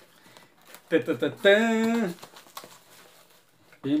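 A man's drawn-out voiced exclamation about a second in, with faint crinkling of plastic bubble wrap as a parcel is unwrapped.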